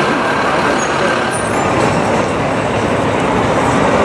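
Busy city street traffic noise, steady and loud, with a heavy vehicle such as a bus or truck running close by.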